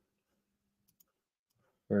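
Near silence broken by two faint, quick computer-mouse clicks about a second in, as the design file is scrolled on screen; a man's voice starts at the very end.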